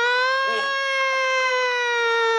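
A man's voice holding one long, loud wailing note through hands cupped over his mouth: a vocal party trick that sounds like someone crying. The pitch sinks slowly as he holds it.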